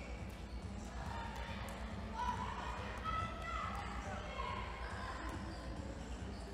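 A basketball bouncing on a wooden gym floor during a game, with scattered shouts from players and spectators, loudest from about two to three and a half seconds in.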